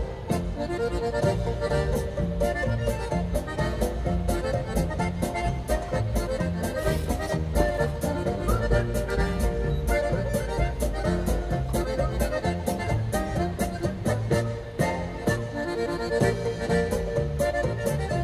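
Accordion-led polka music with a steady, even beat.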